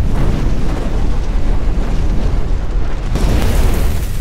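Cinematic fire-and-explosion sound effect for an animated logo reveal: a loud, deep, continuous rumble, joined by a brighter hissing burst a little after three seconds in.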